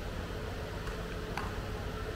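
Steady low hum and hiss of room noise through the sound system, with one faint click partway through.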